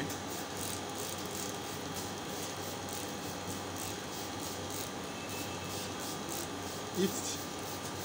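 Hand trigger spray bottle squirting soapy water onto plant leaves in quick repeated short hisses, over a steady low hum.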